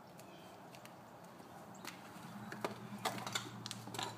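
A few faint, scattered clicks and taps of broken ice pieces and a plastic high chair tray being lifted off concrete, with the clicks coming closer together near the end. A faint low hum comes in about halfway.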